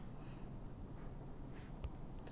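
Quiet room tone with a steady low hum, a couple of faint brushing noises and one light click near the end.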